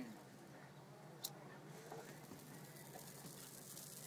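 A lighter clicks once, about a second in, and then a faint steady hiss follows as its flame plays on a spiny cactus fruit to burn off the thorns.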